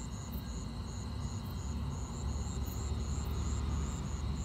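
Low steady rumble of a car driving along a road, with crickets chirping in a regular rhythm over it, about three chirps a second.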